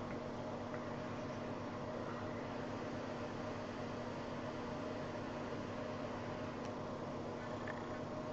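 Steady low hiss with a faint hum, unchanging throughout: room tone. The long inhale on the vape makes no sound that stands out from it.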